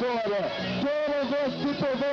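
A man's voice talking.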